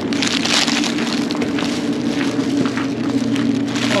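Footsteps crunching on gravel, about two steps a second, over a steady low hum.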